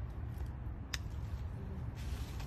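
Wind rumbling on the microphone, with one sharp snip of scissors cutting a strawberry stem about a second in.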